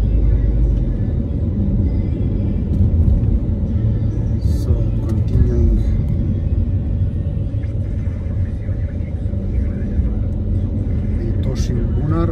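Steady low rumble of a car's engine and tyres, heard from inside the cabin while driving in slow city traffic.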